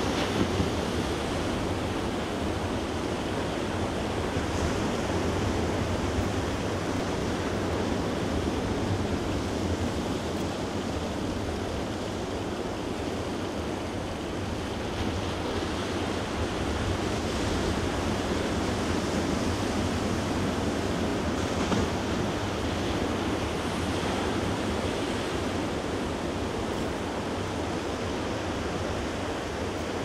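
Ocean surf washing steadily onto a sandy beach, a continuous wash of waves.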